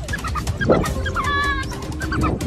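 A rapid run of short, high-pitched chirping calls, the twittering of African wild dogs, with a longer whining call about halfway through.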